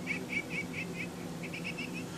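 Faint, quick chirping, about four to five high chirps a second with a short break just after the middle, played through a tiny earphone speaker. It is barely audible, too weak to be heard from a model car with its windows closed.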